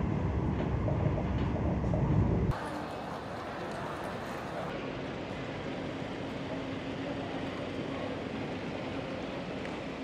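Laos–China Railway high-speed train running, a steady low rumble heard from inside the carriage, which cuts off suddenly about two and a half seconds in. A quieter, even background hiss with a faint steady hum follows.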